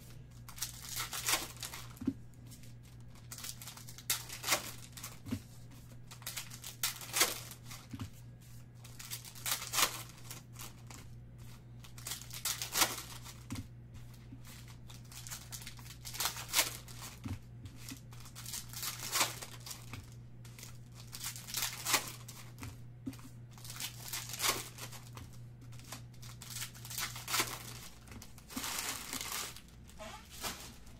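Foil trading-card packs being torn open and crinkled by hand: irregular sharp crackles every second or two. A steady low hum runs underneath and drops away near the end.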